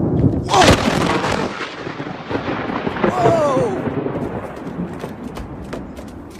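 A close thunderclap: a sharp crack about half a second in, then rumbling that slowly fades over several seconds. A person cries out at the crack and again about three seconds in.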